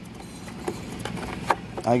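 Two light plastic clicks, one under a second in and one about halfway through, as a hand grips and works the bulb socket on the back of a 2012 Ford Focus tail-light housing, over steady outdoor background noise.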